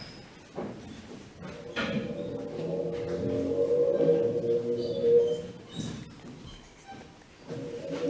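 Recorded excerpt of electronically processed cello played back over a hall's loudspeakers: a sustained tone swells in about two seconds in, fades away around six seconds, and comes back near the end. The cello sound carries the resonances of the spoken word "blood" imposed on it.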